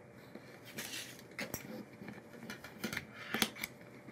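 Faint light clicks and rubbing as a rosette ring is pressed by fingertips into a snug channel routed in a wooden board, with a few sharper ticks as it seats.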